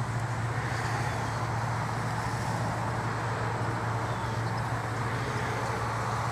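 Steady outdoor background noise with a constant low hum underneath; no distinct events stand out.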